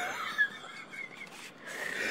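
Soft, breathy, wheezy laughter with faint high squeaks, between spoken jokes.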